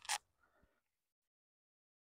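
Near silence: two quick puffs of breath-like noise right at the start, then the sound drops out to dead silence.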